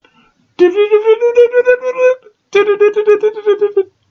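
Two long, loud, buzzy electronic tones with a rapid flutter, the first rising a little in pitch and the second held steady. The sound passes for a fax machine, and is explained as a car stereo's EQ.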